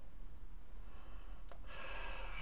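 Quiet room hum, then about a second and a half in a faint click and a soft breath: a man breathing in or out at the rim of a coffee mug held to his face.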